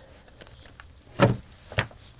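Two brief taps, about half a second apart, against quiet room tone.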